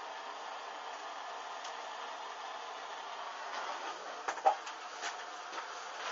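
Steady hiss of a handheld gas-cartridge blowtorch flame, with a few brief crackles from burning fabric about four and a half and five seconds in.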